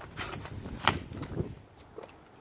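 A cardboard box and its packing being handled as a hand reaches in and lifts out the contents: rustling and scraping with a few sharp knocks, the clearest a little under a second in, growing quieter near the end.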